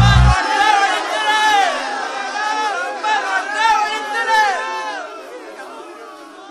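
A song's heavy bass beat stops about half a second in, leaving a group of men's voices clamouring together in long rising-and-falling calls that fade away toward the end.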